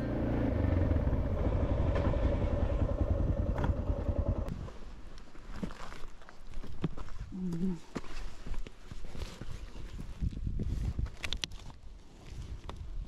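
Suzuki DR650 single-cylinder engine running as the bike pulls up, then switched off about four and a half seconds in. After that come scattered clicks and rustles as the right pannier is opened and rummaged through.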